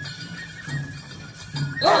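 Japanese festival tiger-dance music: a drum beating about twice a second under a high, held flute line. A loud shout rings out near the end.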